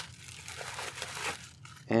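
Plastic packaging crinkling as it is handled, a soft rustle that dies away about a second and a half in.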